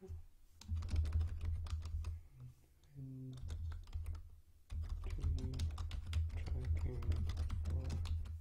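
Typing on a computer keyboard in two runs of quick keystrokes, with a pause of about two seconds between them.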